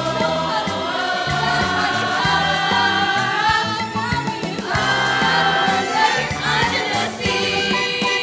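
A stage-musical ensemble of teenage voices singing together over instrumental accompaniment with a steady bass beat.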